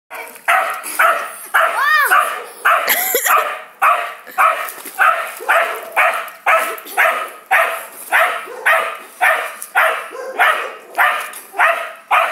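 Wire fox terrier barking in a rapid, steady run of about two barks a second: protective barking, the dog guarding at the pool edge against a swimmer in the water.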